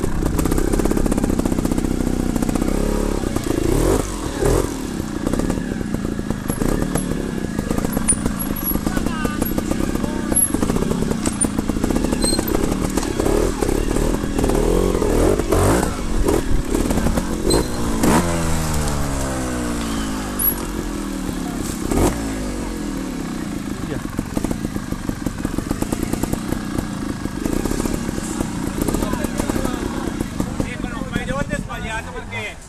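Trials motorcycle engine running close to the microphone at low revs, with throttle blips and occasional knocks as it picks its way over rough ground. About eighteen seconds in, the revs fall away over a few seconds, then pick up again.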